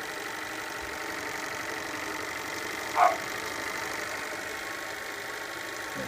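Small live-steam model engine running slowly on about 40 psi of steam while it is being run in, a steady mechanical hiss and clatter. A short rising sound breaks in once, about halfway through.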